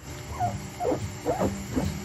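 A person making short, strained whimpering sounds, about two a second, each rising and falling in pitch, over a low hum.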